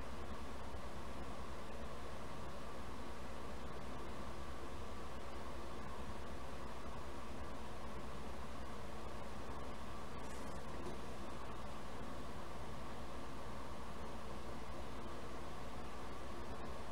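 Steady hiss with a low electrical hum and nothing else: the noise floor of a soundtrack left silent where the original audio, brazing torch included, was removed.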